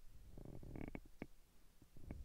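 Faint handling noises: a short low, rough rumble about half a second in, then a few soft clicks and knocks.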